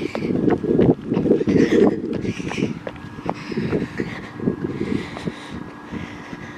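Footsteps and wind buffeting the microphone of a handheld camera being carried while walking, in irregular bursts about twice a second with a few sharp clicks. A faint steady hum comes in underneath about halfway through.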